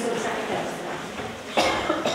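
A single sharp cough about one and a half seconds in, amid speech in a room.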